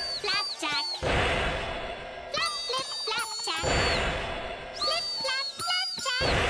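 Cartoon marching-band music: a pair of huge cymbals crashing twice, about two and a half seconds apart, with a high wavering tune between the crashes.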